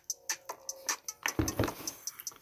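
Metal spoon clicking and scraping against a plastic tub of cottage cheese while eating, over faint background music.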